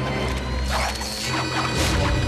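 Cartoon sound effect of a swarm of Scraplets, small metal-eating robotic creatures, clicking and chittering in short clattering bursts about a second in and again near the end, over low, tense background music.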